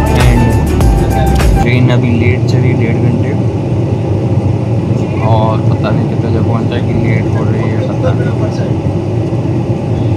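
Steady running noise of a moving passenger train, heard from inside the coach, with faint voices of other passengers. Music plays at the start and stops a couple of seconds in.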